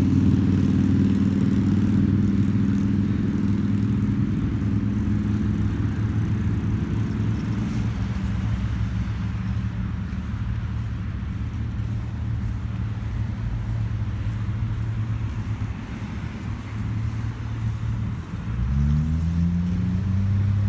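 Small motor of a handlebar-steered ride running steadily with a low hum, easing off past the middle and then rising in pitch as it speeds up again near the end.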